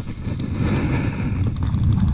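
An old baitcasting reel ticking as the line is cast and wound back, with a run of quick clicks near the end, over a steady low rumble of wind on the microphone.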